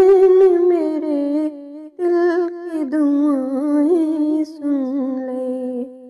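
A woman's voice humming a naat melody without instruments, in long held notes with slow pitch bends, breaking off briefly about two seconds in and fading near the end.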